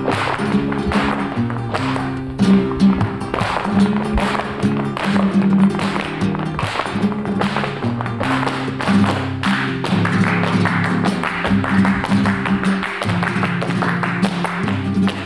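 Flamenco music: a guitar playing over fast, dense percussive tapping.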